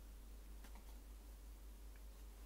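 Near silence: room tone with a steady low hum and a couple of faint soft ticks just under a second in.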